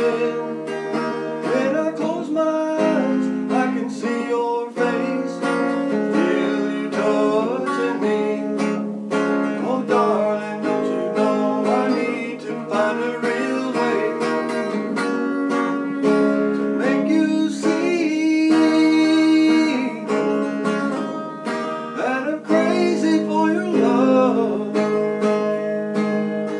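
A man singing a country love song to his own strummed guitar accompaniment, steady throughout.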